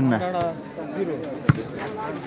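A single sharp smack of a hand striking a volleyball about one and a half seconds in, with men's voices before it.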